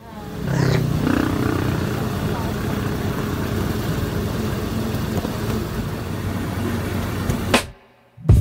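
Steady engine and road noise of a moving motorcycle tricycle, heard from inside its sidecar. It cuts off suddenly just before the end.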